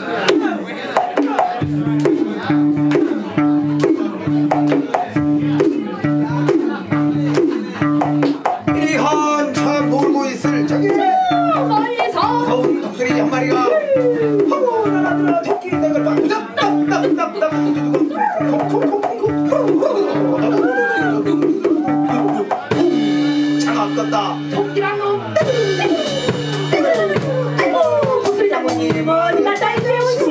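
Live band music: a bass line pulsing in a steady repeating pattern under a drum kit, with voices over the top. Near the end the bass holds its note longer before the pattern resumes.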